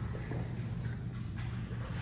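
A steady low room hum with faint rustling and shuffling of two grapplers' gis and bodies shifting on the mat.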